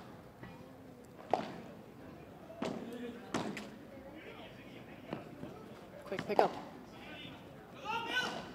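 A padel rally: the ball is struck by paddles and bounces, giving a string of sharp knocks about every second or so. The loudest knock comes about six and a half seconds in.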